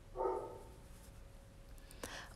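A plush teddy bear pressed by hand gives a single short call, about half a second long, shortly after the start, from its built-in sound unit.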